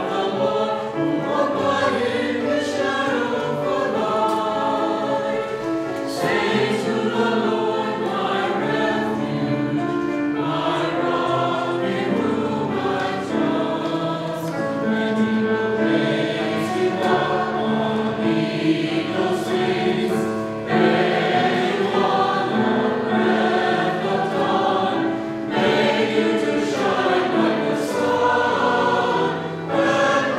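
A mixed choir of men's and women's voices singing in parts, with sustained chords moving from note to note and a brief breath between phrases about twenty seconds in.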